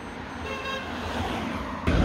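A short car horn toot about half a second in, over street traffic noise that grows louder; just before the end the sound jumps abruptly louder.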